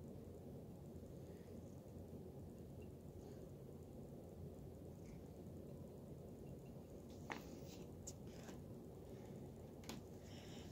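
Near silence: quiet room tone with a low hum, and a few faint light clicks in the last few seconds.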